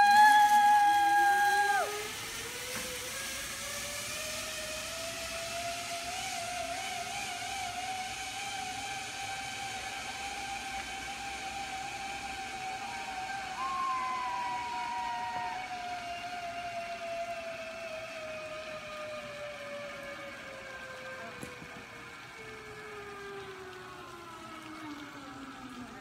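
Zipline trolley pulley running down the steel cable with a long whine: it rises in pitch over the first ten seconds as the rider picks up speed, then slowly falls as she slows. A loud held yell of about two seconds comes at the launch, and a shorter call about fourteen seconds in.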